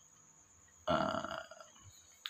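A man's short, rough throat sound, about a second in and lasting about half a second, between pauses in his speech.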